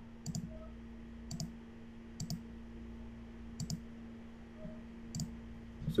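Computer mouse buttons clicking, about six quick clicks spaced roughly a second apart, over a faint steady hum.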